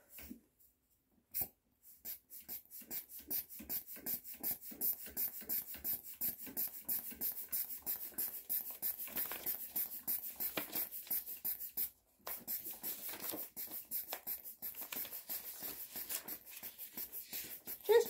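Hand pump on a Boxio Wash water canister being pumped rapidly, about four or five short strokes a second, pressurising the water tank. The pumping starts about a second and a half in and pauses briefly about two-thirds of the way through.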